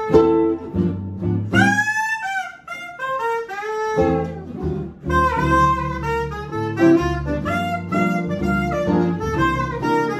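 Small jazz combo playing: a soprano saxophone carries a bending melody line over strummed acoustic guitars and a plucked upright bass.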